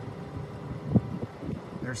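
A pause in a man's talk: steady low background noise with a brief vocal sound about halfway through, and his next word starting at the very end.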